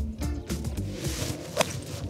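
Background music, with a single sharp click of a golf club striking the ball near the end.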